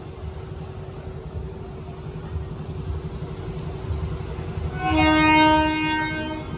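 A train horn gives one long blast near the end, the loudest sound, over a steady low rumble at a railway level crossing.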